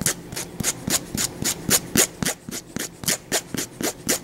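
Nail file rasping back and forth across the tip of a fingernail in short, even strokes, about four a second, filing off the overhanging edge of a freshly applied nail wrap.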